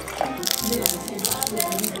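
Crisp Jerusalem artichoke chips crackling and crumbling as a fork and knife break through them, a run of fine crackles starting about half a second in, with background music underneath.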